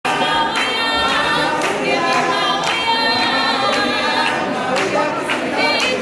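A group of voices singing a gospel song unaccompanied, with sharp hand claps on the beat about twice a second.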